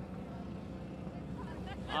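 Steady low rumble of idling vehicle engines in the background, with faint distant voices near the end.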